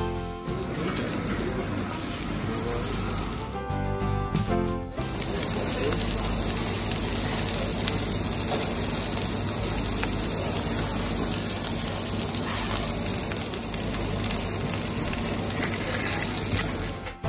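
Sliced meat and prawns sizzling steadily on a hot tabletop grill plate, an even frying hiss, broken about four seconds in by a short burst of music.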